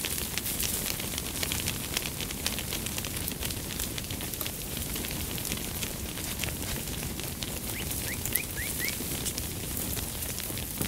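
A flock of sheep walking on an asphalt road, their many hooves making a dense, steady patter of small clicks. A few short rising chirps come in near the end.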